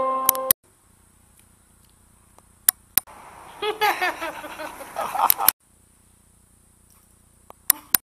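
A woman laughing in short rapid bursts for about two seconds in the middle, cut off abruptly. Before and after, a faint hiss broken by sharp clicks.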